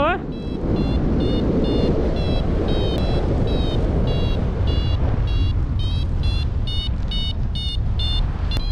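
Paragliding variometer beeping in short regular pips, about two to three a second, the tone it gives while the glider is climbing, over a steady rumble of wind on the microphone.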